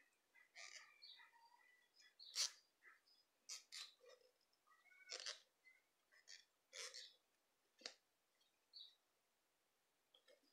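Near silence, with faint scattered clicks and rustles of a crochet hook and doubled wool yarn being worked into stitches.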